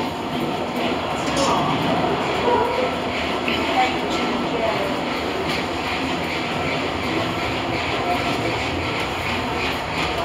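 Steady rumble and rattle of people walking along an airport boarding corridor, with a pushchair's wheels rolling over the floor, light clicks and indistinct voices.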